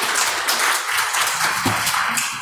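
Audience applauding: many hands clapping steadily at the end of a talk.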